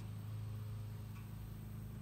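A faint, steady low hum with no starts or stops.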